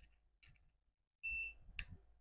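Faint clicks of a USB-C charging plug being pushed into a small lithium charger board, with one short, high beep about a second in and another click just after it.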